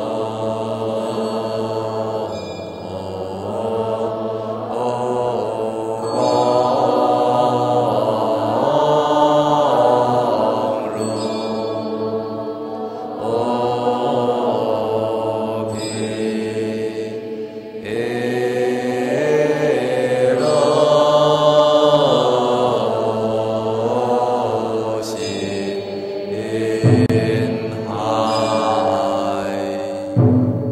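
Buddhist monastics chanting a verse of the Chinese morning liturgy in unison, on slow, long-held melodic notes. A single sharp strike sounds near the end.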